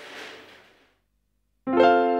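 Korg Krome workstation's grand piano patch, a sampled Steinway grand: a chord struck about a second and a half in, ringing on with its sustain. Before it, faint background hiss fades out into a moment of dead silence.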